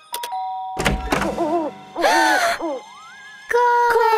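Cartoon doorbell pressed: a click, then a two-tone ding-dong chime, followed by a low thud about a second in.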